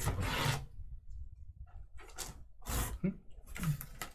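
Hands rubbing and scraping across a cardboard shipping case and shifting it, in a few short rasping bursts: one at the start and two a little past the middle.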